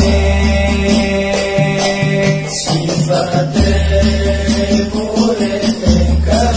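Javanese devotional sholawat song: a voice chanting a verse over musical backing, with a long, steady deep bass note and light percussion.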